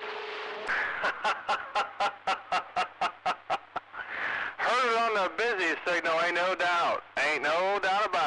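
A man laughing in a quick, even run of bursts, about five a second, heard through a CB radio's speaker after a short steady tone. About halfway through it gives way to a few seconds of unclear talk over the radio.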